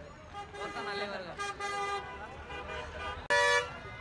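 A vehicle horn gives one short, loud toot near the end, over the chatter of a crowd.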